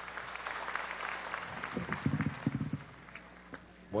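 Audience applause dying away, with scattered individual claps thinning out over about three seconds and a few indistinct voices partway through.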